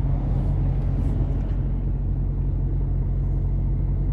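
A truck's diesel engine running steadily, heard from inside the cab as a constant low hum.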